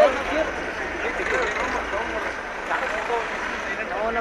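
Crowd of marchers talking over one another, many voices at once and none standing out, over a steady street noise.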